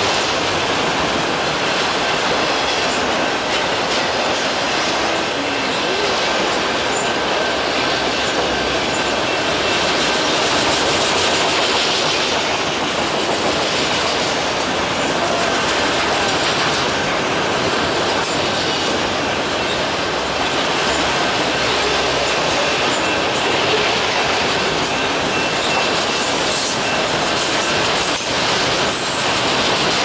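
Freight train of autorack cars rolling past close by: a steady, loud noise of wheels on rail with a faint, thin, high squeal from the wheels held throughout.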